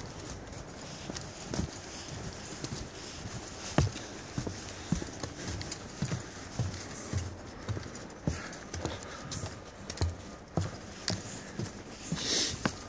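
Footsteps of a hiker walking on a dirt forest trail: soft low thuds that settle into a steady pace of about two steps a second in the second half.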